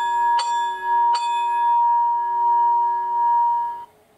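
Bell sound effect from the DCC sound decoder of a Lenz O gauge DB V100 (BR 212) model diesel locomotive. A clear, pitched bell is struck three times in quick succession, rings on for a couple of seconds, then cuts off suddenly.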